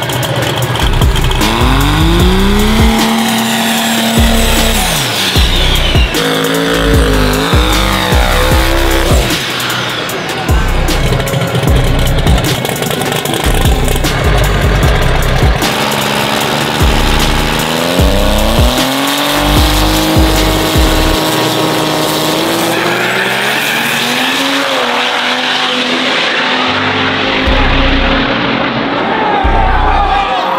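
Turbocharged drag-racing pickup trucks revving hard, the engine pitch climbing and falling in several long sweeps, with tire squeal, mixed with background music that has a steady thumping beat.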